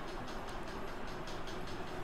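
Steady low background noise: room hiss and hum, with no distinct event.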